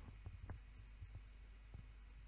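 Near silence: a steady faint low hum, with a few faint low knocks in the first half second.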